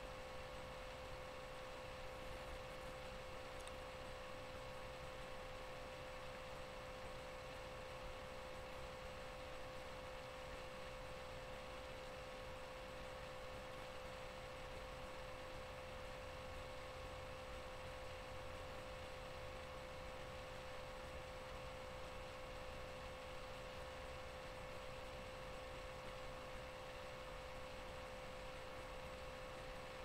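Faint steady electrical hum: one constant tone with a fainter higher tone above it, over low hiss, unchanging throughout.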